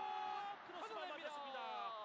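Excited male sports commentator's voice: a long held shout that breaks off about half a second in, followed by more excited speech with falling pitch.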